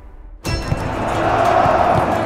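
Background music fading out, then after about half a second the live open-air sound of a stadium pitch cuts in: a steady crowd hubbub with scattered short knocks, typical of footballs being kicked during a pre-match warm-up.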